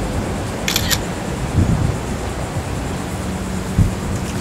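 Steady outdoor background noise on the microphone, with two quick high clicks just under a second in and a couple of soft low thumps later on.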